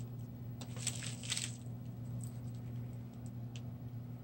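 Soft rustling of handled paper, with a few light ticks, as a small sticker is laid down on tissue paper, over a steady low hum.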